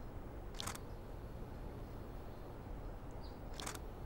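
Camera shutter clicking twice, about three seconds apart, each release a quick double click, over a faint steady background.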